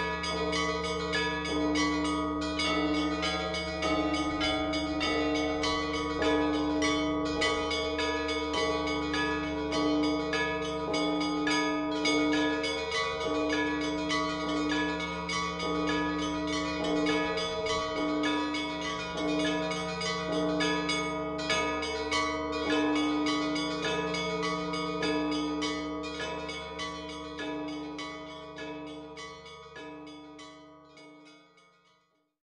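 A set of church bells ringing together: many quick strikes of smaller bells over the long, steady hum of larger ones, fading out over the last few seconds.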